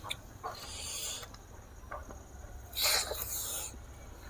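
Close-miked mouth noises of a person eating curry with his hands: a few wet clicks and two short hissing breaths, the second and louder one about three seconds in.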